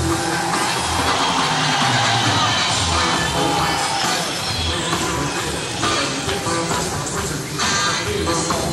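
Live rock band playing an instrumental stretch, taped from the audience in a concert hall.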